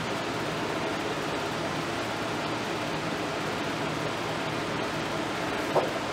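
Steady, even background hiss of room noise with no distinct event, and a brief faint sound near the end.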